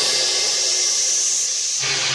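Rising white-noise sweep in an electronic dance track, the hiss creeping slowly up in pitch and dying away near the end as a build-up.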